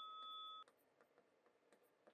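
Near silence: the last of a bell-like ringing tone fades and cuts off under a second in, then only faint light taps of a pen writing on a board.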